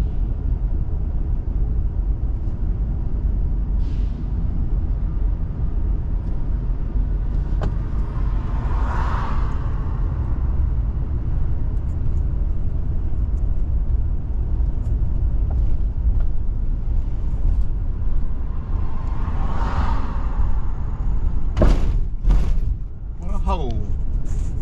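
Car cabin road noise while driving: a steady low rumble of tyres and engine, with two passing vehicles swelling and fading about nine and twenty seconds in, and a few sharp knocks near the end.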